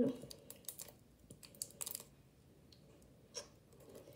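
Faint, scattered clicks and taps of fingers handling a small plastic slime tub and its lid, a few sharp ticks spread across a few seconds.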